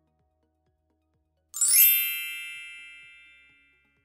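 A bright chime sound effect: a single struck ding about a second and a half in, ringing with many high overtones and fading away over about two seconds.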